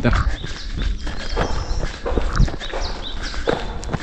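Running footsteps on a dirt trail, a steady patter of about three steps a second, over a low rumble, with short high chirps above.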